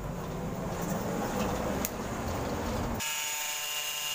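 A rough, even noise for about three seconds, then an electric angle grinder's steady whine begins abruptly; the grinder is being used to slit a PVC pipe lengthwise.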